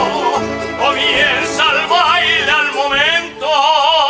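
Canarian folk ensemble of guitars, lutes, accordion and violin accompanying a singer with a wide vibrato. About three and a half seconds in, the voice settles on a long held note.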